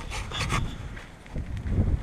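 Handling noise on a phone's microphone: irregular rubbing and small knocks as the camera is moved about in the hand, growing louder near the end.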